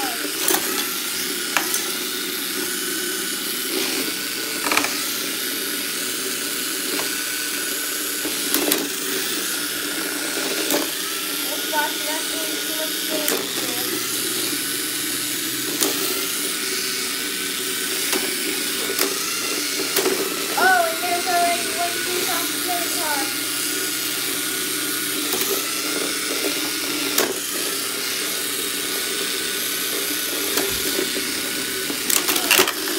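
Small electric motors of remote-controlled toy combat robots whining steadily as they drive and spin, with sharp knocks as the robots hit each other and the arena walls.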